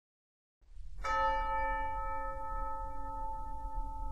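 Silence, then a low background hum, and about a second in a bell struck once, its ring of several overtones fading slowly and still sounding at the end.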